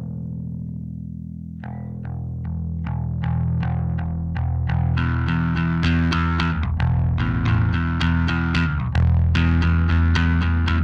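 Blues rock band playing live with electric guitar and bass guitar: a held bass note opens, then about two seconds in a steady pulse of sharp strikes, about two or three a second, comes in. The music builds and grows louder as more instruments join around five seconds in.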